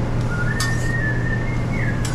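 A thin, high whistled tone held for about a second and a half, stepping up in pitch near the end, over a steady low kitchen hum. A metal spatula clicks against the steel griddle about halfway in and again at the end as pancakes are flipped.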